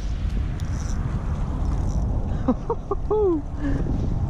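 Wind buffeting a camera microphone as a steady low rumble, broken about two and a half seconds in by a brief laughing exclamation of a few syllables ending in a falling 'oh'.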